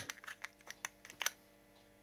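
Plastic guitar pick being pushed into a Dunlop Pickholder, giving a quick run of small clicks and taps as it slides into the holder's grip, the last two the loudest, about a second in.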